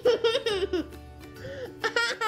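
A toddler giggling and squealing in high-pitched bursts, one lasting about the first second and another starting near the end, over soft background music.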